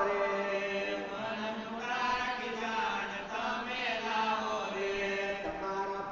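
Devotional chanting: a sung melody on long held notes that glide from one pitch to the next.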